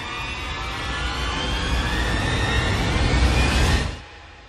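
Logo-intro riser sound effect: a noisy swell over a deep rumble, with tones gliding slowly upward as it grows louder, cutting off suddenly near the end.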